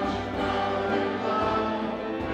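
Several voices singing a church worship song to grand piano accompaniment, in sustained notes without a break.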